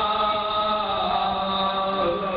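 A man chanting in a melodic voice into a microphone, holding long notes that slide slowly in pitch.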